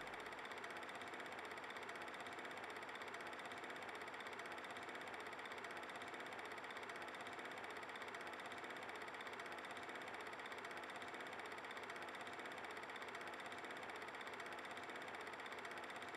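Faint steady hiss of room tone or background noise, with no distinct events.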